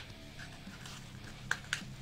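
Faint background music, with two small sharp clicks near the end as a small zip-up pencil case is handled.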